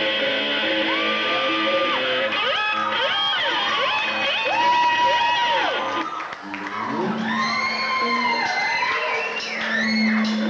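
Live rock band playing, with a lead line on electric guitar sliding up and down in pitch and holding notes over the band.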